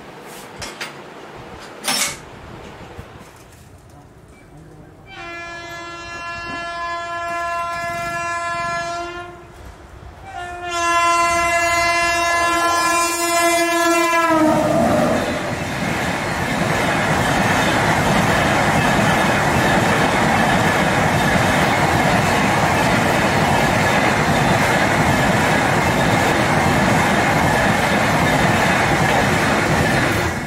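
An Indian Railways WAP7 electric locomotive's horn sounds two long blasts, the second dropping in pitch as the locomotive passes. The Humsafar express coaches then roll by, with a steady rumble and clickety-clack of wheels on the rails.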